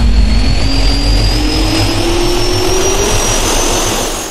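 Jet turbine spooling up, as a logo sound effect: a loud, deep rumble with a whine that rises steadily in pitch.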